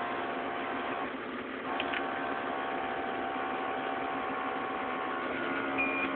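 Trail-grooming tractor's engine idling, heard inside the cab: a steady hum with several steady tones.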